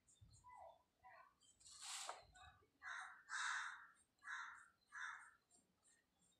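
Faint bird calls in the background: a run of about five harsh calls, each about half a second long, beginning about two seconds in, after a few weaker short calls.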